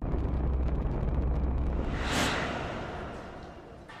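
Sound-effect rumble of the Space Shuttle streaking through the atmosphere on re-entry. It starts suddenly, deep and steady, with a whoosh that swells and passes about two seconds in, then fades away.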